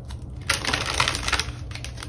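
A quick run of light, rapid clicks and rustling, starting about half a second in and lasting about a second.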